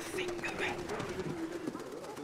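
A steady low tone, falling slightly in pitch, that stops about one and a half seconds in, under faint voices in the hall.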